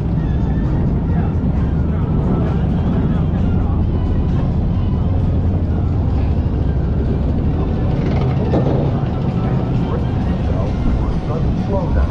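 Water-coaster boat riding along its track: a steady low rumble.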